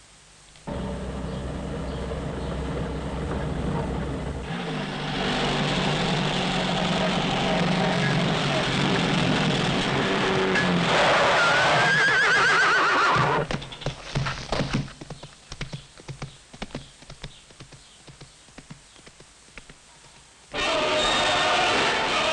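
Horse whinnying loudly, its call wavering and rising about eleven seconds in, over a loud dense layer of sound. Scattered knocks and clatter follow for several seconds, then a loud burst of sound near the end.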